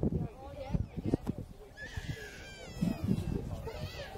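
Breeze buffeting the microphone in uneven low rumbles, with voices around and a high, wavering cry about two seconds in.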